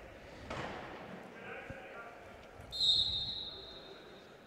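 A referee's whistle blows once near the end, a single steady shrill note that fades over about a second, over background chatter from the crowd. About half a second in there is a sharp knock.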